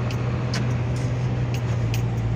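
A vehicle engine running with a steady low hum under even road noise.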